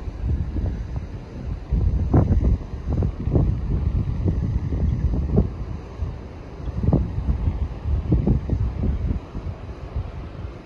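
Wind buffeting the microphone in irregular gusts, a low rumbling noise that surges several times.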